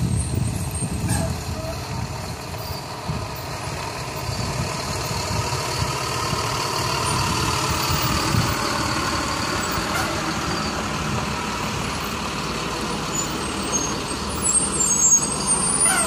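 A full-size yellow school bus's engine running as the bus drives slowly in and turns around, with a whine that rises and then falls.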